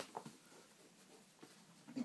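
Near silence: quiet room tone, with a couple of faint brief clicks.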